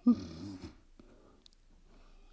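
A woman's short, strained whimper while cringing, lasting under a second, followed by a couple of faint clicks.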